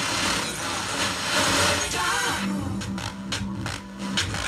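Fisher FM-100-B tube FM tuner being tuned across the band: a rush of hiss between stations with faint snatches of broadcast, then a fragment of music coming through in the second half.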